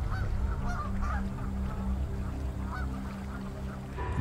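Canada geese honking in flight, a run of calls in the first second or so and a few more near the middle, over a steady low drone.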